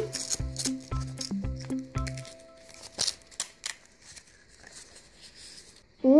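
Paper rustling and crinkling as a homemade paper surprise egg is opened and a paper dragon cut-out is pulled out, with a few sharp paper clicks. A light background music tune plays under it and stops about two seconds in.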